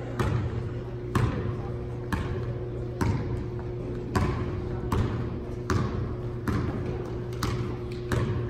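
A basketball being dribbled on a gym floor at about one bounce a second, each bounce echoing in the hall.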